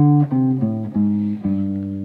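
Archtop jazz guitar with a clean tone playing a single-note bass line in the low register. About five notes ring one after another, stepping down in pitch.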